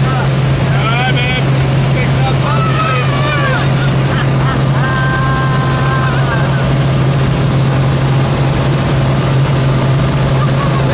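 Steady drone of a small single-engine propeller plane in flight, heard from inside the cabin, with an unbroken low hum.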